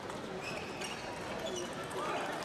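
Celluloid-style table tennis ball clicking off bats and table in a doubles rally, a few sharp ticks spaced irregularly, over the murmur of spectators in a large hall.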